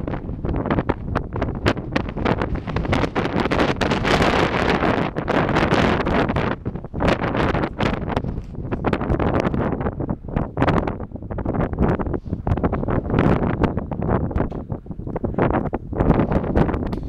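Strong wind buffeting the camera's microphone, a loud gusty noise that rises and falls from moment to moment.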